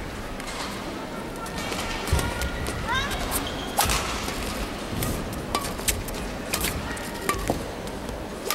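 A badminton rally: rackets striking the shuttlecock in sharp cracks about a second apart, with court shoes squeaking and feet thudding on the court floor.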